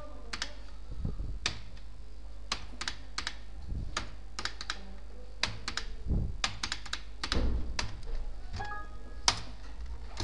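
Computer keyboard typing and mouse clicks, irregular and sharp, over a steady low hum.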